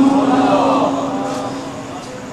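The amplified echo of a Quran reciter's long held note dies away through the sound system, keeping the note's pitch faintly and fading steadily after the voice itself has stopped.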